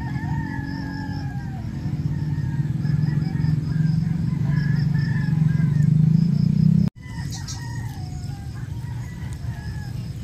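Roosters crowing over a low steady rumble. The rumble grows louder and then cuts off sharply about seven seconds in.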